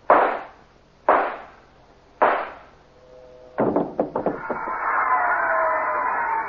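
Three gunshots in an old-time radio drama, each a sharp crack with a short tail, about a second apart. Then a quick rattle of knocks, and from about four seconds in a held, slowly falling music chord.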